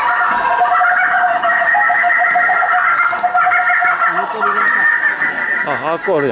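Recorded call of a laughing kookaburra played from a push-button sound box's speaker: a long, continuous laughing chorus that stops near the end, followed by children's voices.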